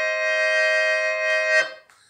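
Melodica, blown through its mouthpiece tube and played from its keyboard, holding a chord that stops about one and a half seconds in.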